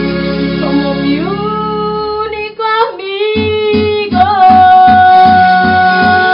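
A woman sings a Spanish-language song into a microphone over amplified backing music. She slides up into long held notes, the last one wavering with vibrato. A low pulsing beat, about four a second, comes in about three seconds in.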